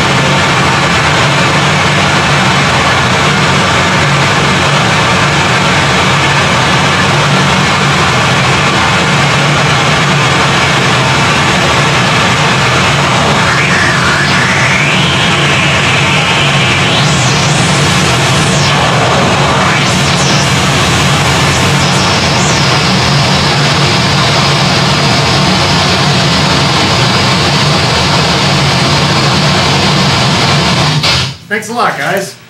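Harsh noise music from a chain of effects pedals: a loud, unbroken wall of distorted noise over a heavy low drone. About halfway through, shrill sweeps rise and fall in pitch for several seconds.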